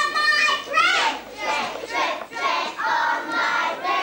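A group of children's voices chanting in unison, in short high-pitched phrases of about a second each.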